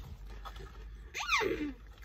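A girl's hummed "mm" of enjoyment while tasting a crisp: one hum about a second in, rising and then falling in pitch.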